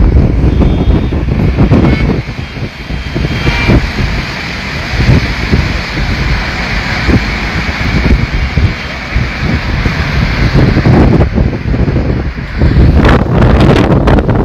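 Heavy wind buffeting on the microphone of a camera on a moving vehicle, over the low rumble of vehicles driving on the road.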